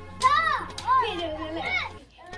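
A child's high-pitched voice calling out playfully without clear words, in several rising-and-falling calls that stop suddenly near the end.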